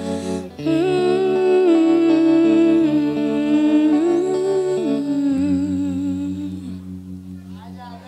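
A woman's wordless vocal line, held and bending in pitch, over sustained backing chords. The voice stops a little before the end and the chords fade, closing the song.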